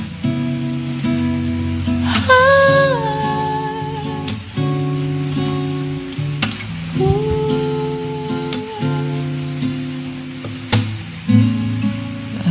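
Acoustic guitar ballad: guitar chords ring steadily, and a voice sings a couple of long held notes over them, about two seconds in and again near the middle.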